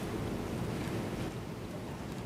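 Steady low rumbling background noise from the courtroom sound feed, with no speech, and faint brief ticks over it.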